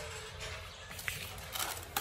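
Faint rustling and scuffing as a kneeling worker shifts on a concrete floor and handles his gloves and supplies, with a sharp click near the end.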